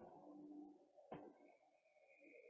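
Near silence: faint room tone, with one soft click just over a second in.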